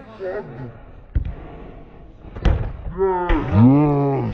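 Two sharp thuds of a football being kicked, a little over a second apart, followed by two shouted calls near the end, the second one long and drawn out.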